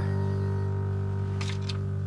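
Background music holding one sustained chord at an even level, with a few faint clicks near the end.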